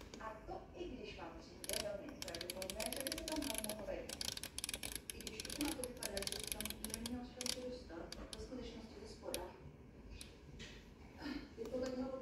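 Rapid clicking of a built-in oven's rotary control knob as it is turned to set the timer, a dense run of detent clicks for several seconds, then a few single clicks.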